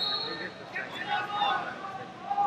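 Voices of people talking and calling out over a background of crowd chatter, with a brief high-pitched tone at the very start.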